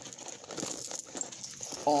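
Rustling and small clicks of a clear plastic zippered pouch being handled as items are packed into it.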